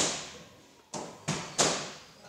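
Four sharp smacks of gloved punches landing, one at the start and a quick run of three in the second half, each ringing out in the echo of the gym hall.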